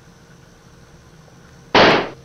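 A single gunshot near the end, one short, very loud bang.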